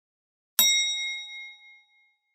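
A single bright chime, struck once about half a second in and ringing out with a bell-like shimmer that fades over about a second. It is an edited-in ding sound effect marking the channel's logo intro.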